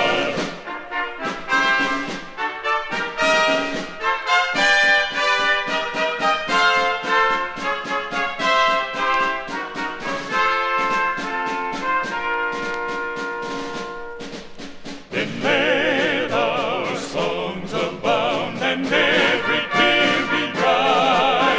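A trumpet trio plays an instrumental interlude of a hymn tune in close harmony over steady drum strokes. About fifteen seconds in, the trumpets give way to men's voices singing with vibrato.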